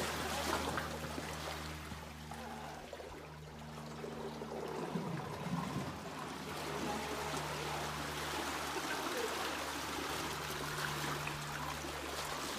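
Water sloshing and surging against the rock walls of a narrow cave pool: seiche waves set off by a distant earthquake. The water noise eases slightly about three seconds in, then picks back up.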